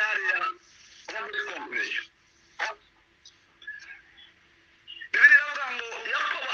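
Speech only: a man talking in short phrases broken by pauses, with the thin sound of a voice coming over an online call.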